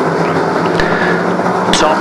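BriSCA F1 stock cars' V8 engines running flat out around the oval as a steady drone, with a short sharp knock about a second in and another near the end.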